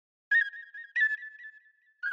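A high whistled tune from the background score: a short phrase that starts again about a second later and settles into a long held note.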